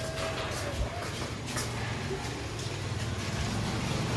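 Steady low rumble of street noise with distant traffic, with a few faint knocks in the first two seconds.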